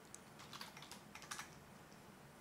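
Faint computer keyboard typing: a handful of scattered keystrokes in the first second and a half.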